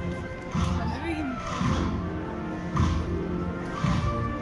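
Band music playing a slow procession march: held wind tones over a heavy drum beat about once a second, with cymbal splashes on the beats. Crowd voices underneath.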